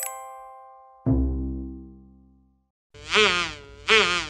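Cartoon insect buzz: a warbling, wavering buzz heard twice near the end, the sound of the animated ladybug flying in. Before it, a song's final note rings briefly at the start, and a deep low note sounds about a second in and fades away.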